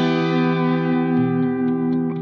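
Distorted electric guitar with effects letting a chord ring out, the low notes shifting about a second in.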